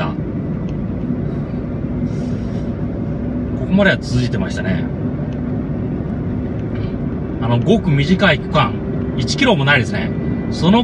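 A car driving along a road, with steady engine and tyre noise. Voices speak briefly about four seconds in and again from about seven and a half seconds on.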